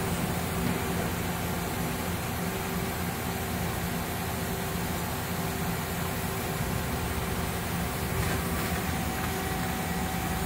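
Steady hum of a Mazak Integrex 650 CNC mill-turn machine with a few low held tones, even and unchanging throughout.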